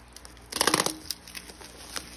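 Plastic bubble-wrap packaging crinkling and tearing as it is pulled open by hand: one loud burst of rustle about half a second in, then lighter scattered crinkles.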